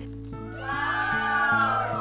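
Background music under a group of women squealing and shrieking with excitement, their high cries starting about half a second in.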